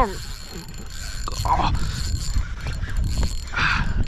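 Spinning fishing reel being cranked under load from a strong hooked tautog, a quick run of mechanical clicking and ratcheting.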